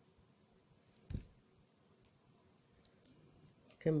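Knitting needles being worked quietly: one sharp click about a second in and a faint tick near three seconds as the circular needles knock together while stitches are made.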